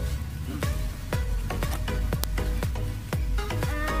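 Background music with a steady electronic dance beat and a deep bass line.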